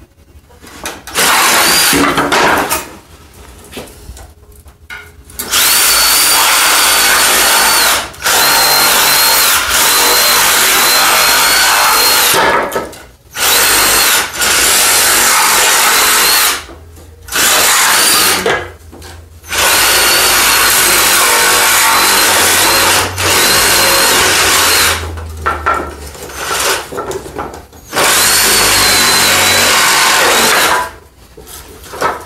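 Cordless reciprocating saw running in repeated runs of a few seconds with short pauses between, its blade cutting through the nails that hold pallet boards to the middle stringer. A wavering high whine rides over the rasp of the blade.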